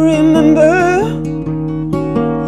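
Woman singing with her own acoustic guitar. She holds a sung note that bends in pitch over picked guitar notes, and the voice stops about a second in. The guitar then carries on alone with plucked notes.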